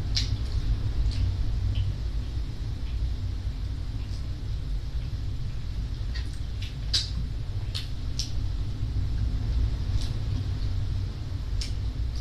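Chewing and lip-smacking of people eating by hand, heard as scattered short wet clicks, over a steady low rumble of room noise.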